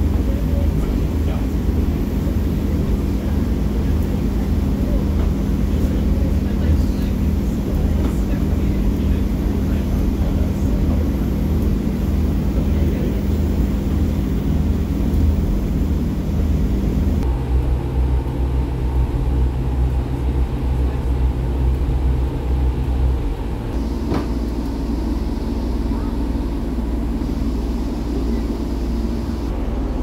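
Inside a moving Class 144 Pacer diesel railbus: the underfloor diesel engine drones steadily over the rumble of the wheels on the track. About seventeen seconds in the engine note drops lower, and a few seconds later it falls again, slightly quieter, as the unit eases off towards its next stop.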